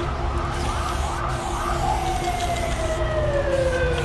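Background hip-hop beat with a deep bass line. About two seconds in, a siren-like tone starts and slides slowly downward in pitch.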